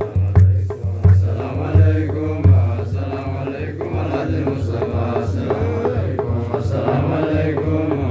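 Men's voices chanting a menzuma, an Ethiopian Islamic devotional song, over a large hand-struck frame drum beating a steady rhythm. The strongest drum strokes fall in the first two or three seconds.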